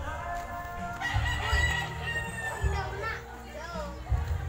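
A rooster crowing once, a long held call starting about a second in, over background music with a steady bass beat.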